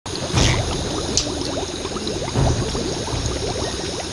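Gas from a leaking underground pipeline bubbling up through muddy water, a continuous gurgling of many small bubbles, with two louder low surges.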